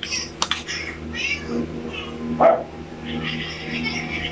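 Several short, high-pitched animal calls, like a cat meowing, with a louder cry about halfway through. A couple of sharp clicks come near the start.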